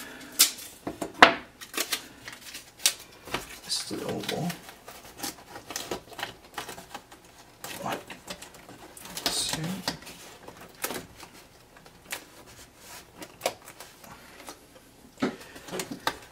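Painter's tape being torn off and pressed on by hand: irregular clicks and crackles, the loudest a sharp click about a second in.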